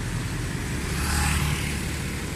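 Street traffic on a wet road: motorbikes and cars passing with their engines running and tyres hissing on the wet asphalt. The traffic grows louder about a second in.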